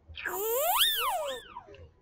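Computer-game sound effect from the Code.org maze puzzle as the bee's program finishes and the puzzle is solved. It is a cartoon-like whistling glide that rises for about a second and then falls, with a shorter second glide just after.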